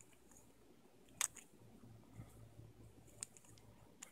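Faint handling of a brass mechanical vape mod as its threaded tube sections are screwed back together: light scraping and small ticks, with a sharper click about a second in and another near the end.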